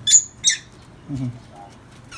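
Two short, high-pitched squeaks from caged pigeons in quick succession, followed by faint low sounds.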